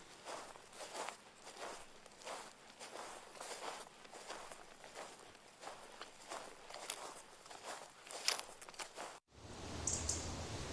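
Footsteps of several people walking through tall grass and brush, the plants swishing against their legs in a steady run of steps a little over two a second. The steps stop abruptly about nine seconds in.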